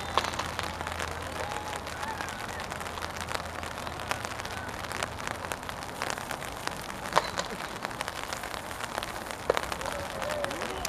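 Steady hiss of rain with many small ticks of drops. Three louder sharp knocks stand out: one just after the start, one about seven seconds in, and one near the end.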